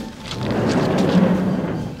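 Corrugated sheet-metal sliding barn door being forced open by hand, a loud rumbling rattle that swells and fades.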